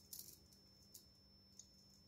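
Near silence with a few faint ticks of dried herbs and spices pattering onto chopped tomatoes in a plastic blender bowl as they are shaken from a glass jar: a short cluster at the start, then single ticks about a second in and near the end.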